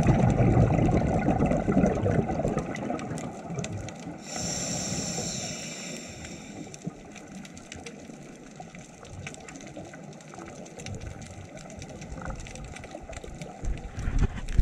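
Scuba diver breathing underwater. A rush of exhaled bubbles rumbles for the first two or three seconds, then the regulator hisses on the inhale from about four to seven seconds in. Faint crackling clicks run underneath.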